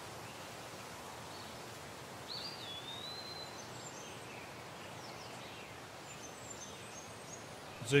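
Steady faint background noise with a few faint bird calls: a gliding whistled call about two to three seconds in, and short high chirps later on.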